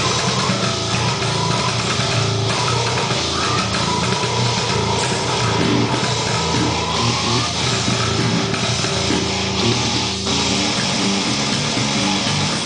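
Six-string electric bass, an Ibanez SR506, played fingerstyle along with a brutal death metal track of drums and distorted guitars; the music is loud and runs on without a break.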